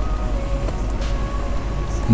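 A steady low hum, with a faint held tone above it.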